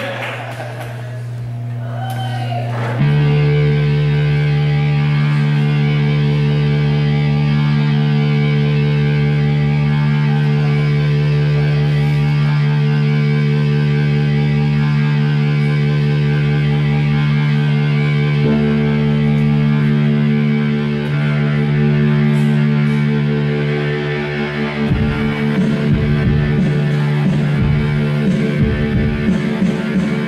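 Live music on two electric keyboards: a sustained, droning chord sets in about three seconds in and holds steady, shifting once midway. A low pulsing beat joins near the end.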